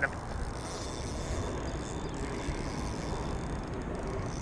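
Steady outdoor background noise: a low rumble with a light hiss and no distinct events.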